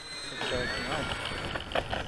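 Radio-controlled model Bearcat warbird's motor throttled back for landing, a thin high whine dropping slightly in pitch as the plane rolls out on the runway, under men's voices.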